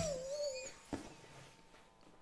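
A man's high, wavering 'oooh' of amazement that slides down in pitch and lasts under a second. It is followed a moment later by a single sharp click.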